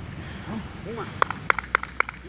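A coach's short shouted counts, then a quick run of about seven sharp taps in the second half, plausibly the goalkeeper's feet striking a low wooden step box during a footwork drill.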